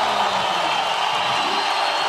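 A large crowd cheering steadily, celebrating a skateboard trick just landed.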